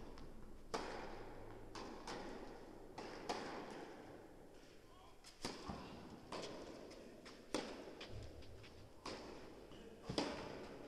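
Tennis ball being struck by rackets and bouncing during a point on an indoor court: sharp pops about every second or so, each echoing in the large hall.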